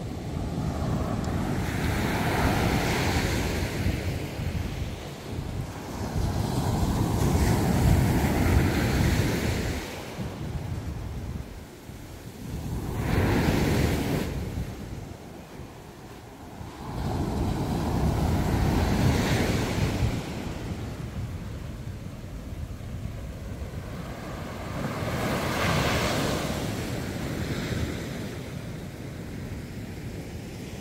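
Ocean surf breaking on a sandy beach, rising and falling in slow surges every few seconds, with wind rumbling on the microphone underneath.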